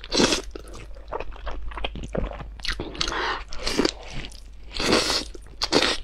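Close-miked slurping and chewing of spicy instant noodles: several loud slurps, each about half a second long, with wet chewing between.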